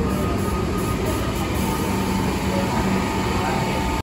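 Alstom Comeng electric train standing at the platform, its equipment giving a steady low hum, with the chatter of passengers around it.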